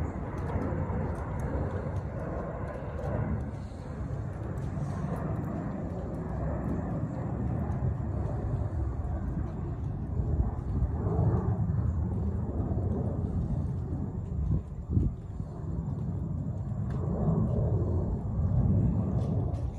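Steady low outdoor rumble with no clear pitch. A single sharp knock comes near the end.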